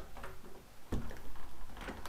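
Handling noises at a door: scattered clicks and light knocks with some rustling, and a firmer thump about a second in.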